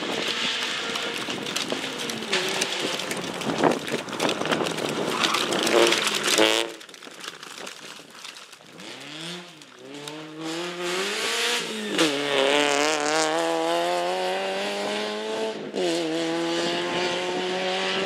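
Citroën Saxo rally car at full throttle. First a noisy pass with tyre and gravel noise. After a cut about a third of the way in, the engine's pitch climbs and drops back at each upshift, three times.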